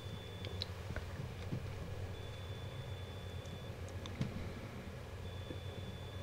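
Faint steady low hum, with a thin high-pitched tone that comes and goes about every three seconds and a few faint clicks.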